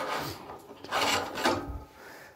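Aluminium fire-hose coupling being twisted off the threaded port of a petrol water pump: metal grating and rubbing on metal in two spells, the second about a second in.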